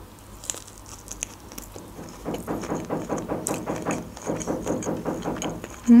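Chewing a mouthful of shrimp sushi, with a fast, even, muffled knocking of about five beats a second coming through the wall from about two seconds in until near the end: the neighbours' renovation noise.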